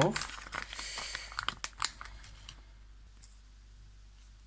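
Plastic lidding film being torn and peeled off a ready-meal tray, crinkling and crackling with sharp snaps for about two and a half seconds before it goes quiet.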